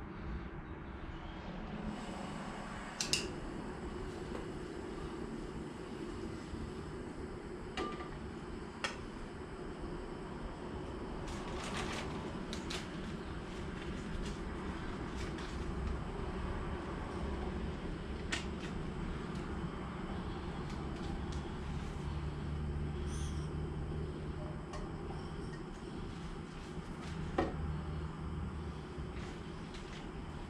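Canister camping stove burner running with a steady hiss, with a few sharp clicks and knocks of a frying pan and utensils handled on and around it.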